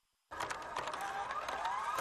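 A broadcast transition sound effect: after a moment of dead silence, a noisy whoosh starts abruptly, with a tone rising in pitch through it.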